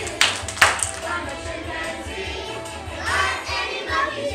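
Children's choir singing along with a recorded music backing track. Two loud, sharp claps stand out in the first second.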